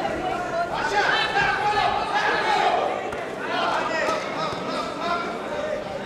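Men's voices shouting and calling out, overlapping and echoing in a large sports hall.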